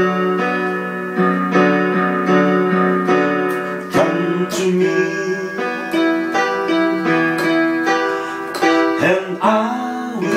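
Portable electronic keyboard playing a slow worship song: held chords with a melody moving over them, the notes changing every half second or so.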